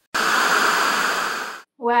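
A loud burst of steady hissing noise, cut in abruptly and lasting about a second and a half.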